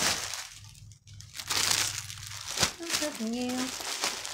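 Plastic bags and plastic-wrapped clothing crinkling as they are handled, in two spells of rustling with a short lull about a second in and a sharp click a little past halfway.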